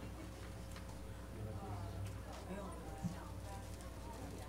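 Faint, indistinct background voices over a steady electrical hum, with one sharp click or knock about three seconds in.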